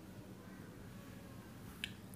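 Quiet room tone with a faint hiss, and one short, soft click near the end.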